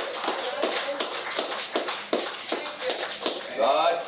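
Hands clapping in a steady rhythm, about three claps a second, over voices; a louder voice comes in near the end.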